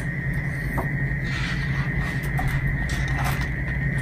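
Steady room hum with a thin high whine, and faint paper rustles and soft clicks as a picture-book page is turned.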